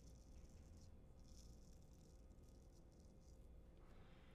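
Faint scraping of a Ralf Aust 5/8" carbon steel straight razor cutting through lathered stubble, in a few slow, short strokes with only the heel of the blade on the skin.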